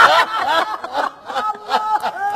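Several women laughing hard together in loud, rising and falling bursts.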